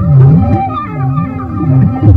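Live experimental electronic music: a low electronic tone swoops up and down in a steady wobble about twice a second over held higher notes, with the beat dropped out.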